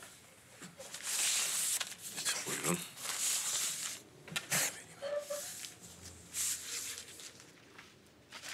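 Food wrappings rustling and crinkling in several short bursts as wrapped dürüm wraps are handled and passed around a table.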